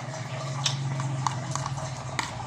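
A spoon clicking and tapping against a plastic bowl while eating, several sharp irregular clicks, over a steady low hum.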